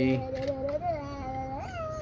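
A drawn-out, high, wavering wail with a voice-like ring, held for most of two seconds and bending upward in pitch twice.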